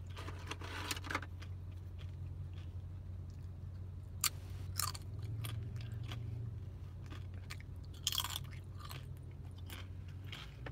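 Crunching bites and chewing of a tortilla chip, with sharp crunches about four seconds in, again just after, and a louder cluster near eight seconds.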